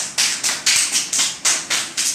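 Hand clapping in a quick steady rhythm, about four claps a second.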